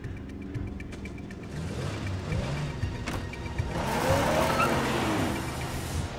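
A car engine revving up and down several times, getting loudest about four seconds in.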